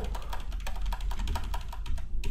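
Computer keyboard typing: a quick run of keystrokes as code is entered in a text editor.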